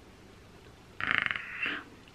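A woman's short, raspy, growl-like vocal noise about a second in, with a fast rattle at its start.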